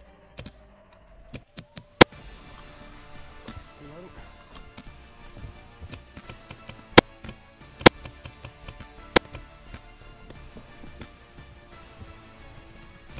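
A paintball marker firing single shots close to the microphone: about five loud, sharp cracks spaced irregularly, one to five seconds apart. Background music plays throughout.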